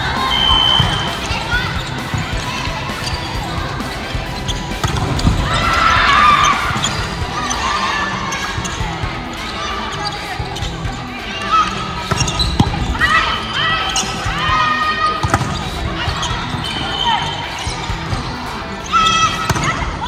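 Volleyball being struck during a rally, with sharp hits of the ball amid players' calls and shouts, which swell into an excited drawn-out 'ooooh' near the end.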